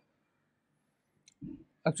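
A pause in the conversation: near silence for over a second, then a faint short click, a brief low sound, and a man's voice beginning to speak just before the end.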